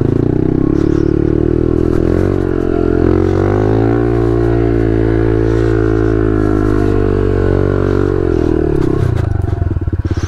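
2021 Honda CRF110F's small single-cylinder four-stroke, fitted with an aftermarket exhaust, running under throttle on a trail ride. Its revs climb about two seconds in, hold fairly steady, and drop back near the end before rising again.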